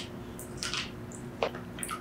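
Wet squishing and sucking mouth sounds from biting into soft, ripe mango flesh, close to the microphone. There are a handful of short, sharp wet smacks, the loudest about one and a half seconds in.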